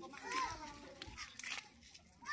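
Faint, intermittent children's voices calling and chattering.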